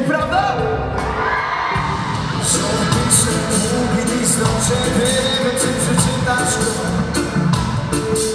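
Live reggae-pop band playing: a male lead vocal over drums with regular cymbal strokes, and the crowd cheering underneath.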